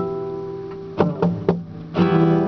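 Nylon-string classical guitar: a chord rings and fades, then three short sharp strokes about a quarter second apart, and the playing picks up again at the end.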